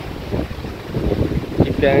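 Wind buffeting a phone microphone, with the rush of water from a small stream cascade underneath.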